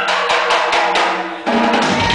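Tama drum kit played in a quick, even run of hits, about four or five a second, as a live punk band gets into a song. A sustained low note from an amplified bass or guitar comes in about halfway through.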